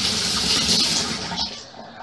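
Kitchen tap water running into a stainless steel sink as a plastic mixing spoon is rinsed; the water stops about a second and a half in.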